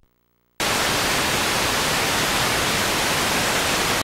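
Loud, steady static hiss that starts suddenly about half a second in, after a moment of near silence: the noise of a blank stretch of videotape after the recording ends.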